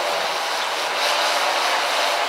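Steady whirring buzz of a quadcopter drone's spinning propellers, heard as a sound effect in an animated intro.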